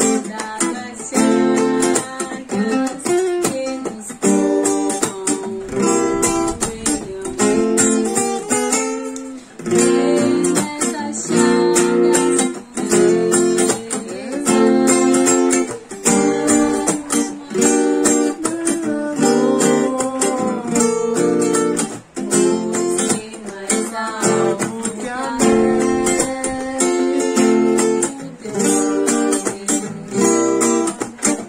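Steel-string acoustic guitar strummed in a steady rhythm, with chords changing about every second, as accompaniment to a hymn.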